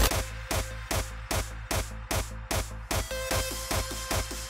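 Electronic dance music with a steady, fast beat of about four strikes a second over a sustained bass.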